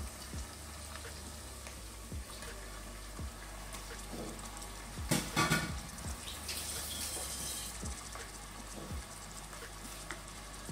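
Rabbit pieces sizzling in hot olive oil and garlic in a stainless steel pot, with a louder burst of crackling and clatter about five seconds in as the last pieces go in.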